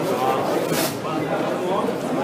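Crowd chatter in a large hall: many voices talking at once, with no single voice standing out.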